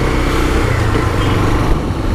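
Honda CB 300's single-cylinder engine running steadily under way, with wind and road noise over it.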